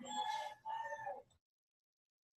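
A rooster crowing twice in the background, two short, steady, high-pitched calls, before the sound cuts off suddenly into total silence.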